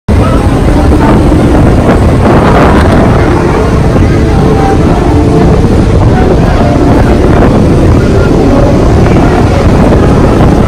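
Strong wind buffeting the microphone, a loud steady rumble, over ocean surf breaking on the shore.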